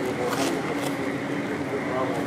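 Indistinct background voices over a steady ambient hum.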